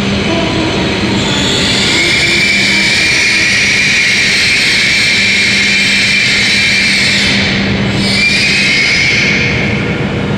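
E7 series Shinkansen train rolling slowly into the platform and braking to a stop, with a steady rush of wheel and running noise. A high brake squeal rises from about two seconds in, breaks off briefly, then returns and fades as the train halts.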